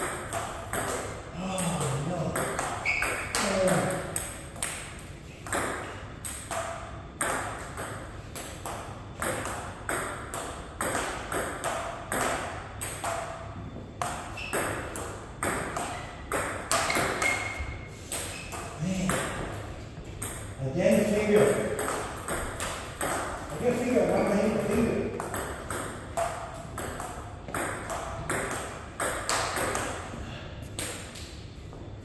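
Table tennis rally: the ball clicking off paddles and the table in a steady run of sharp hits, back and forth.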